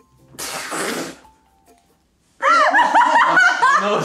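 A short breathy burst of noise lasting about a second, then, a little past halfway, loud high-pitched laughter that breaks out suddenly and keeps going.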